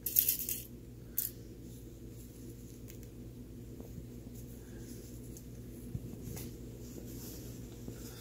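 Cloth rustling as hands fold and smooth a length of fabric on a table: a brief swish at the start and a shorter one about a second in, then faint handling noises, over a steady low hum.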